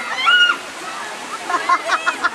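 Several high-pitched voices of children and young women shouting and calling out during play, loudest about half a second in, with a run of rapid short cries near the end, over a steady hiss of surf.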